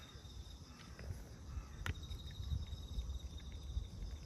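A steady, rapidly pulsing high insect trill, like a cricket, over a low rumble, with small wet clicks of a cat chewing soft food and one sharp click a little under two seconds in.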